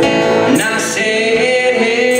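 Live acoustic guitar strummed, with a man singing held, wavering notes and light percussion hits, including a few crisp metallic strikes about half a second in.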